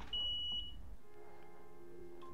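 A single steady, high electronic beep lasting under a second, over a low hum. In the second half, faint piano-led music from the music video's intro starts to come in.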